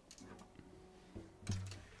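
An acoustic guitar being picked up and handled: its strings ring faintly, with a couple of soft knocks against the body in the second half.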